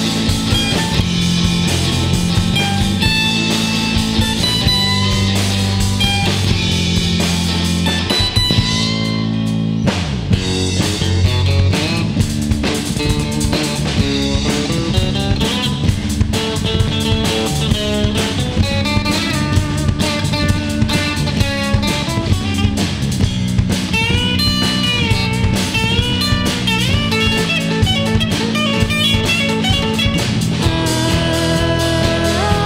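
Live rock band playing an instrumental passage: electric guitars over bass guitar and drum kit, with a lead guitar line bending in pitch in the second half.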